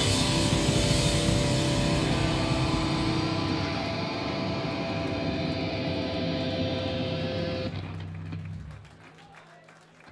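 Electric guitar and bass amps ringing out on a held final chord after the drums stop, with steady sustained tones, slowly fading and then cut off sharply near the end. A low bass note hangs on for about a second after the cut, then only faint room noise remains.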